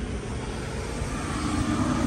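Steady low engine drone, with a humming tone joining it about halfway through.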